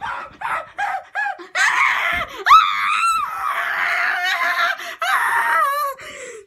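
A boy's high-pitched excited scream: a quick run of short, rising yelps, then a long, wavering scream with a couple of brief breaks that stops just before the end.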